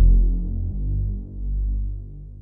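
The song fading out at its end: deep bass notes held and swelling twice while the higher sounds die away.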